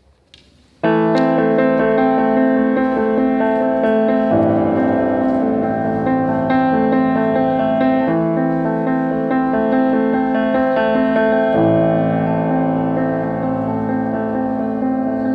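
Solo grand piano piece beginning suddenly about a second in, a steady flow of sustained chords with deeper bass notes entering at a few points.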